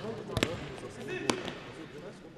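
Two sharp knocks of a futsal ball being played on a hard sports-hall floor, about a second apart, echoing in the hall over players' voices.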